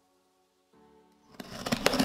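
Soft background music with held notes, dropping out briefly. About a second and a half in, loud crackling and clicking handling noise starts as hands work at the top of a cardboard box.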